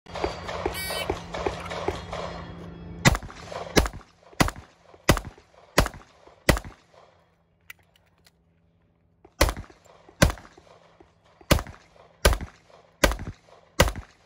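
Pistol shots fired at targets: after about three seconds of loud rushing noise, six shots about 0.7 s apart, a pause of nearly three seconds, then six more at the same pace.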